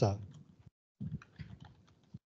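Typing on a computer keyboard: a quick, irregular run of key clicks starting about a second in.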